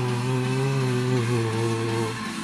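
A low, rough, buzzy vocal note held for about two seconds, dipping slightly in pitch, cutting off at the very end.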